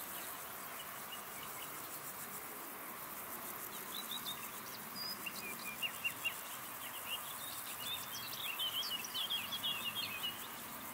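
Outdoor meadow sound: a steady high chirring of insects such as grasshoppers or crickets. Over it a songbird sings in quick, chattering bursts of short falling notes, loudest in the second half.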